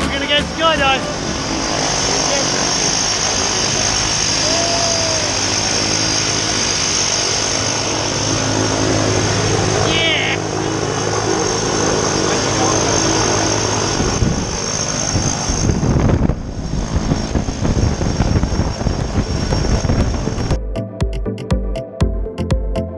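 An aircraft engine runs steadily, a loud roar with a high whine over it. In the second half low gusts of wind rumble on the microphone, and electronic music with a beat starts near the end.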